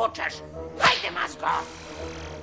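Cartoon sound effect: a sharp swish about a second in, over background music and short bits of a character's voice.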